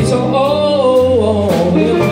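A live blues band playing: electric guitar, drums, electric keyboard and bass, with a melody line that bends up and down in pitch over a steady beat.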